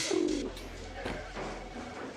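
Pigeon cooing, loudest in the first half second.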